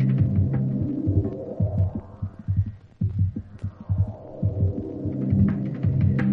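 Tribal techno and breaks track played from a 12-inch vinyl record, in a breakdown. The drums and hi-hats drop away, leaving a throbbing bass pulse under a falling-then-rising sweep with a short dip in the middle, and the percussion builds back in near the end.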